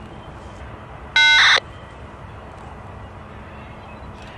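A crow caws once, loud and close, about a second in, a single harsh call lasting about half a second. Behind it runs the distant, steady rumble of the train's diesel locomotives working to hold the heavy train on the grade.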